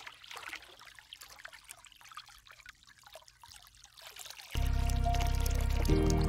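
Thin streams of water trickling and splashing down a mossy rock face, fairly quiet and growing fainter. About four and a half seconds in, loud ambient music with a deep, held chord starts abruptly and takes over.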